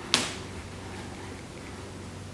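A single sharp tap just after the start, a watercolour brush knocking against the palette while paint is picked up, followed by a low steady hum.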